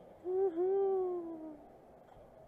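A person's voice: a drawn-out 'ooh', a brief note and then a longer one that falls slowly in pitch.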